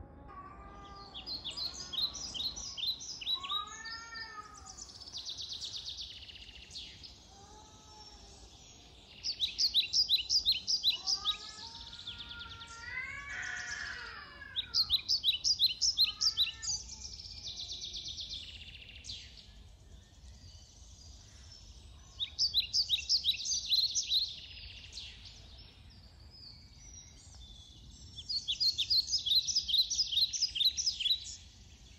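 Two cats in a standoff giving drawn-out yowls that rise and fall in pitch, several times over. A small songbird sings loud, rapid trilled phrases every several seconds, the loudest sound.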